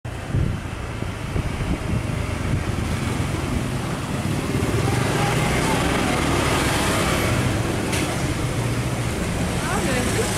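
Motorcycle engines running and passing close by amid steady street traffic noise, with indistinct voices in the background.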